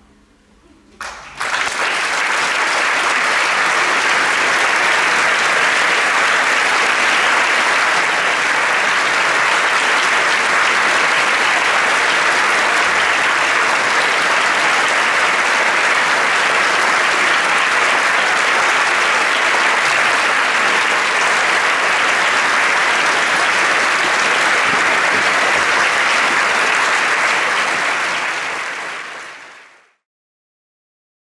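Large audience applauding: the applause breaks out suddenly about a second in, holds steady, and fades out near the end.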